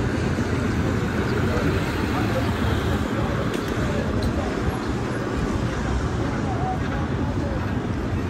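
Busy city street ambience: a steady rumble of traffic with the chatter of passers-by.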